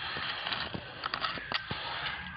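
Handling noise: a handful of short, sharp clicks and light crackles over a steady hiss.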